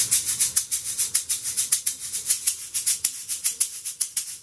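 Handmade Shakka Shakerz 'Softz' tube shakers (MDL-5 and MDL-6, 1-3/4 inch across) shaken in a steady rhythm of about six strokes a second. They give a soft, high rattle.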